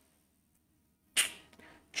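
Near silence, then about a second in a single short, sharp breathy hiss: a man's quick intake of breath.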